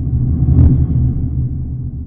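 Deep rumbling swell of a logo sound effect, building to its loudest about half a second in and then slowly fading away.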